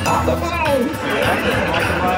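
Seinfeld slot machine playing its bonus-round music, with voice or voice-like sounds in the mix.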